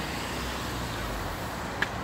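Steady outdoor noise of road traffic on wet streets in heavy rain, with one sharp click near the end.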